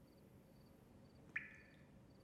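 A single water drop falling from a dripping tap: one sharp plink with a short ringing tail, about a second and a half in, over near silence.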